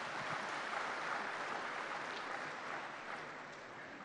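Audience applauding, fairly faint, tapering off slightly toward the end.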